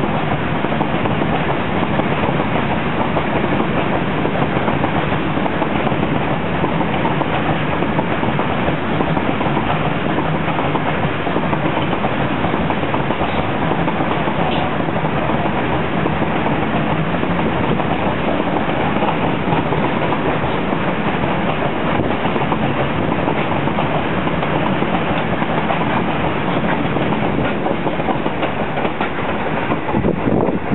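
Long freight train of covered box wagons passing close by, a loud, steady run of wagon wheels on the rails; the last wagon clears right at the end.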